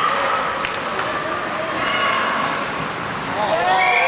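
Young ice hockey players' voices calling out across an indoor rink over a steady wash of arena noise, with a shout near the end.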